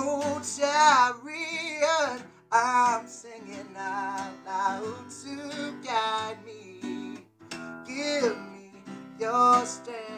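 A man singing with a strummed steel-string acoustic guitar; the voice carries long, wavering held notes over the chords.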